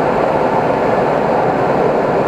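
Steady rush of airflow over the canopy heard inside the cockpit of an SZD-50 Puchacz glider in flight: an even, unbroken noise with no engine note.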